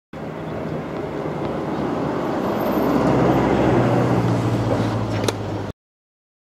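Outdoor background noise with a steady low hum, growing louder toward the middle, with one sharp click about five seconds in; it cuts off suddenly.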